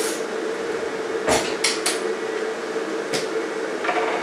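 Kitchenware clinking and knocking as it is handled on a kitchen worktop: about five short sharp knocks, the loudest a little over a second in. A steady low hum runs underneath.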